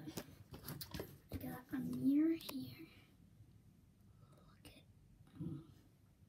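A child's quiet, mumbled voice for the first three seconds or so, with a short rising hum about two seconds in. It then goes nearly quiet, apart from one brief soft sound near the end.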